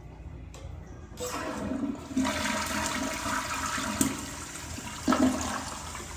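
Vortens dual-flush toilet flushing. A rush of water starts about a second in and grows louder a second later, with a sharp click near the middle and a second loud surge near the end before it begins to ease off.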